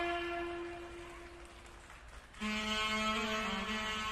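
Instrumental music: a held note fades away over about two seconds, then a new sustained chord of several tones comes in sharply a little past halfway.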